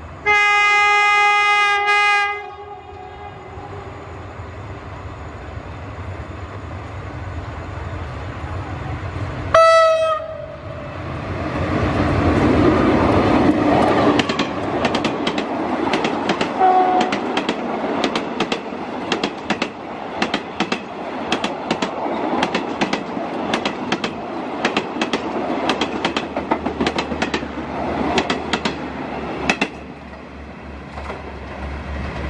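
Diesel passenger train horn sounding one long blast of about two seconds, then a short toot about ten seconds in. The locomotive then rumbles past, followed by a steady run of clickety-clack from the coaches' wheels crossing the rail joints.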